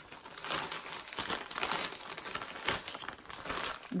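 Thin translucent plastic packaging bag crinkling as it is handled and turned over, in irregular rustles of varying loudness.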